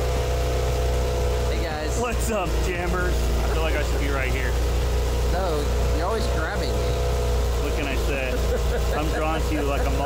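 An engine running steadily at idle: a low, even drone with a fixed hum above it, under people's voices.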